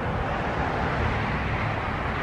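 Steady rushing noise of vehicle traffic with a faint low rumble beneath it.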